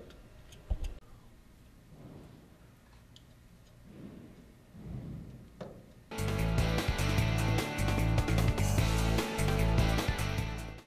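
Faint handling noise and a single sharp click as the roller steady adjusting screw of a bar feeder is worked by hand, then loud music with a beat starts suddenly about six seconds in.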